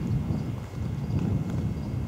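Wind buffeting an outdoor microphone: an uneven low rumble.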